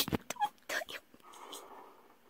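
A person's brief whimpering vocal sounds in the first second, followed by a soft breathy noise.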